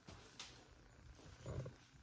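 Near silence: room tone, with one faint click about half a second in and a soft, brief low sound near the end.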